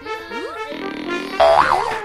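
Cartoon background music with comic sound effects: a few sliding, gliding pitches, then a loud springy boing about one and a half seconds in, marking a botched bow shot whose arrow drops flat.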